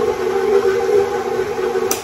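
Tilt-head stand mixer running at a steady speed, beating a thick, caramel-heavy batter, its motor giving an even hum. A short click comes near the end as the sound cuts off.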